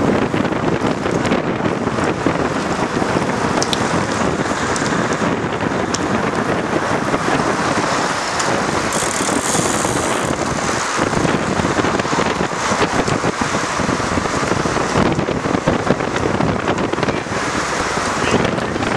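Wind rushing over the microphone of a camera moving along with the cyclists, a dense, steady, rumbling rush with no letup.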